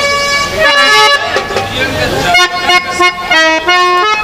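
Harmonium playing a melody of held, reedy notes that step from pitch to pitch.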